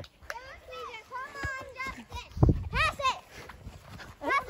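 Children calling out in high voices during play, with one dull low thump about halfway through.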